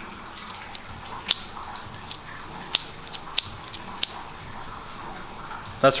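Small handmade pocketknife being opened by hand and springing back shut under a spiral spring cut from flat titanium: about eight sharp clicks, irregularly spaced, stopping about four seconds in.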